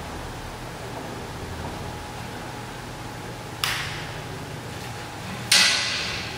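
Two sharp slaps over a steady fan hum; the second and louder one is hands catching a steel pull-up bar, with a short ringing tail from the rig.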